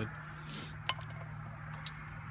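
Two light, sharp clinks about a second apart: small pipe fittings being handled, brass hose adapters and PVC pieces.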